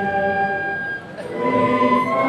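A gathered crowd singing a hymn in unison, holding long notes; the singing breaks off briefly about halfway before the next line begins.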